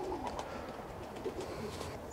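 Racing pigeons cooing faintly, low and wavering.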